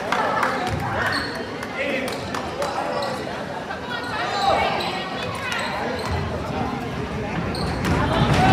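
A basketball bouncing a few times on a hardwood gym floor, the sharp bounces echoing in the large gym, with voices talking throughout.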